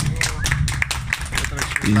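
A small group of people clapping by hand, with voices talking underneath.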